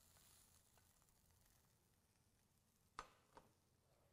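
Near silence: faint room tone, broken by one short sharp click about three seconds in and a fainter click just after it.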